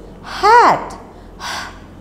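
A woman's voice sounding out a single drawn-out syllable whose pitch rises and then falls, as in slow, exaggerated phonics pronunciation, followed near the end by a short breathy sound.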